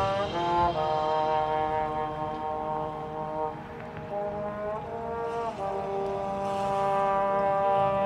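Marching band brass section playing long sustained chords outdoors, the chord shifting a few times, most clearly just under a second in and again at about three and a half, five and five and a half seconds.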